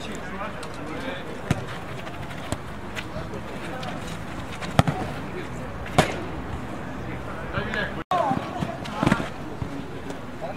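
A football being kicked during five-a-side play: several sharp thuds, the loudest about six seconds in, over players' distant voices.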